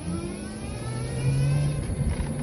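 Motor scooter engine accelerating, its pitch rising over about the first second and then holding steady.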